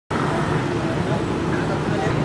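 Steady outdoor din of road traffic mixed with people's voices.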